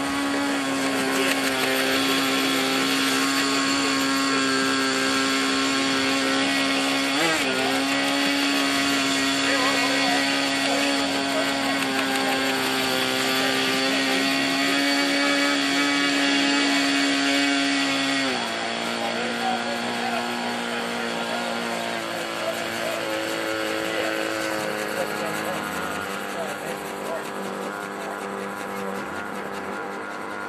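Electric motor and gear drive of an RC ornithopter giving a steady whine. It drops to a lower pitch and gets a little quieter about two-thirds of the way through, then sinks lower again near the end.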